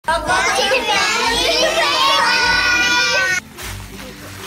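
Children's voices, loud and continuous, cutting off suddenly about three and a half seconds in.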